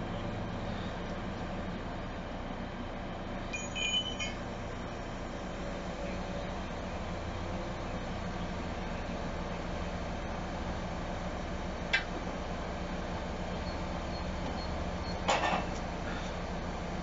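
Mobile crane's diesel engine running steadily with a low hum while it swings a heavy load. A few short metallic clinks sound about four seconds in, a single sharp click near twelve seconds, and a brief rattle of clinks near the end.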